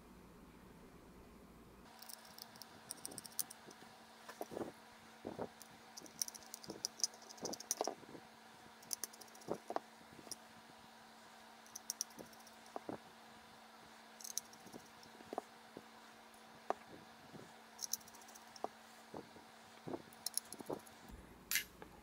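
Faint, irregular clicks and small metallic taps of a precision screwdriver and tiny screws as a chip board is screwed back into a metal vape box mod.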